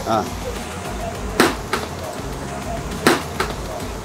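Two sharp blows of a hammer striking a motorcycle helmet, about a second and a half apart, in a hammer crash test of the helmet, over a steady low background.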